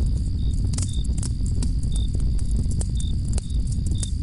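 Night-time ambience sound effect: crickets chirping in short high chirps over a low steady rumble with scattered sharp crackles, like a campfire burning.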